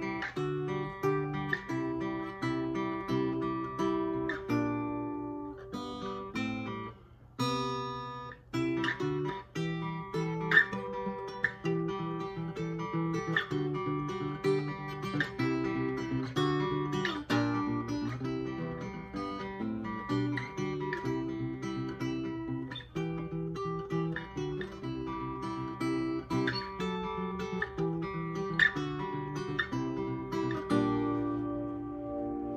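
Dean St Augustine mini jumbo acoustic guitar played fingerstyle: a steady flow of plucked notes and chords, with a brief pause about seven seconds in.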